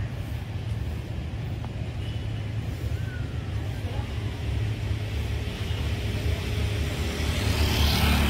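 Street traffic dominated by a steady low motor rumble. Near the end it grows louder as a motorcycle passes close by.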